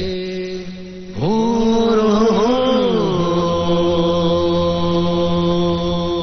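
Film background music: a low chanted vocal note over a drone. It slides up about a second in, wavers, then holds steady on one long note.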